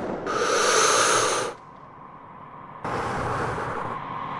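Logo-intro whoosh sound effects: a loud burst of rushing noise about a quarter second in that cuts off abruptly at a second and a half, then a softer, steady hiss from about three seconds in.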